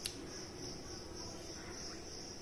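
A cricket chirring steadily, a high pulsing trill about four times a second, with a single short click at the very start.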